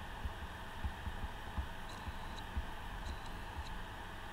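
Stylus writing on a pen tablet, heard as irregular soft low thumps a few times a second with a few faint clicks, over a steady electrical hum and hiss from the microphone.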